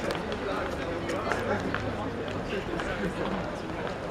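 Busy street ambience: indistinct voices of passersby talking, over a steady city background with scattered footsteps.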